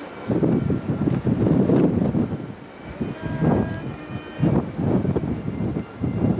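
Strong wind buffeting the camcorder's built-in microphone: an uneven, gusting low rumble that eases briefly near the middle, then picks up again.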